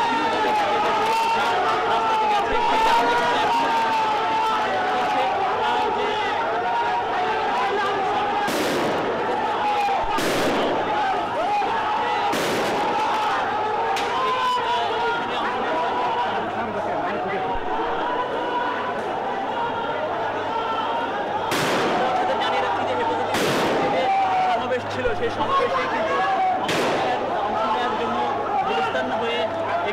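A street crowd shouting and calling out, with sharp bangs of gunfire going off about half a dozen times, spread through the clip.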